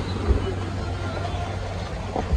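Steady outdoor noise: a low rumble and hiss, with faint distant voices.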